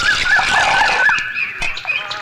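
A bird calling: a quick run of about five repeated rising-and-falling notes, then a higher, more level note in the second half.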